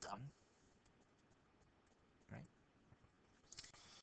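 Near silence with faint, irregular ticks of a stylus writing on a pen tablet, a few clearer ticks near the end.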